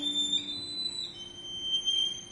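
Violin playing a quiet, very high, thin sustained note, shifting pitch about a second in.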